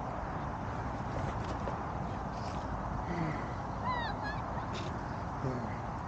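Steady wind rumbling on the microphone, with a short run of quick descending bird calls about four seconds in.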